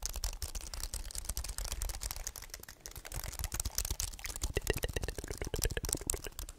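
Fingers quickly tapping and clicking the keys of a low-profile white wireless keyboard held right up to the microphone, a dense, continuous patter of small clicks.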